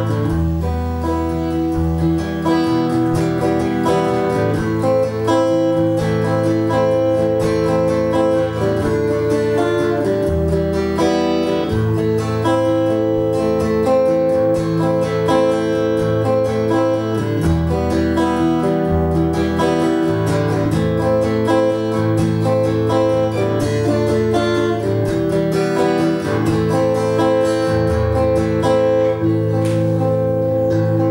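Steel-string acoustic guitar playing a repeating A minor rhythm figure in an odd meter, which the player thinks is counted in eighths (x/8).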